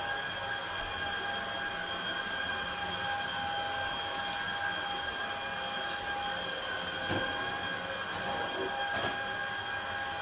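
Upright vacuum cleaner running on carpet: a steady motor whine over a rushing of air, with a couple of light knocks in the second half.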